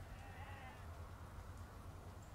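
A faint, short wavering animal call, about half a second long, like a distant bleat, over a low steady hum.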